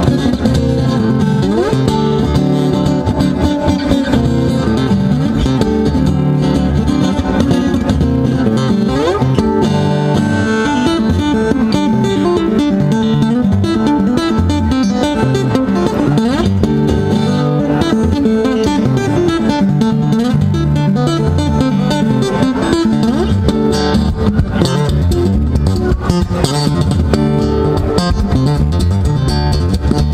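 Martin OMCPA-1 cutaway acoustic guitar played fingerstyle in a percussive funk style: fast picked melody over a bass line, with sharp percussive hits on the strings and body keeping a steady groove.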